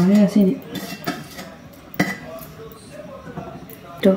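Steel plate lid lifted off a kadai and set about, with scattered metal-on-metal clinks of steel utensils against the pan; the sharpest clink comes about two seconds in.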